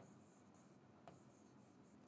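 Near silence, with one faint tap about a second in from a pen on the writing board as digits are written.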